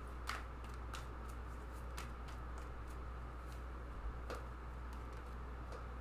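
A deck of tarot cards shuffled between the hands: a few faint, sharp card clicks spaced a second or so apart, over a steady low hum.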